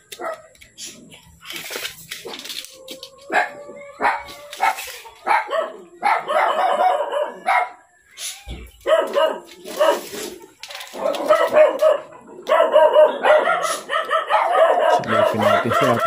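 A dog barking in long, rapid runs, starting about five seconds in, after a few light clicks and taps.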